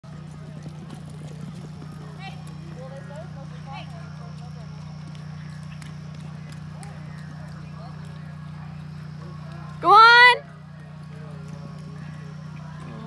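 Hoofbeats of a horse galloping a barrel-racing pattern in arena dirt, with scattered spectators' voices over a steady low hum. About ten seconds in, a person gives one loud, short, rising yell, the loudest sound.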